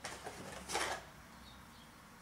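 Brief rustling and scraping from handling steel wool and tableware, loudest in a short scrape just under a second in, then quiet room tone.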